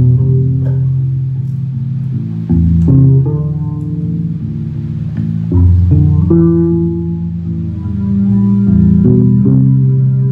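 Electric bass guitar played solo in a slow ambient improvisation. Long-held low notes are struck afresh about every two to three seconds, with higher ringing notes sounding above them.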